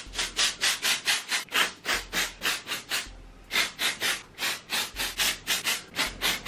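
Aerosol can of black colour hairspray spraying onto hair in quick short bursts, about five a second, with a short pause about three seconds in.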